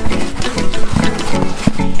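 Background music over the wet squelching of dye-soaked cloth being kneaded by hand in a basin for batik dyeing.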